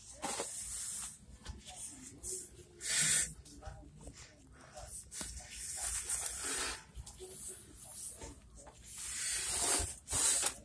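Cleaning a granite countertop: short hissing squirts of a trigger spray bottle and a cloth wiping the stone, in separate bursts about three seconds apart.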